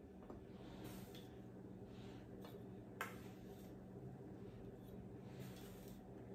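Faint scraping of a spatula against a metal baking sheet as cookies are lifted off, with one light click about three seconds in, over a low steady room hum.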